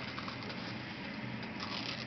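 Faint crinkling and rustling of a gauze dressing and tape being peeled back from a chest tube site, over a steady low hiss.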